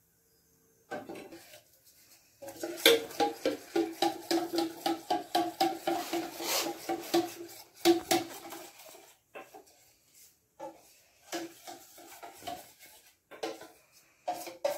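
Metal spoon stirring a sauce mixture in a stainless steel bowl, clinking rapidly against the sides so the bowl rings, about three or four strikes a second. It starts about a second in, and in the second half the strikes thin out to scattered clinks.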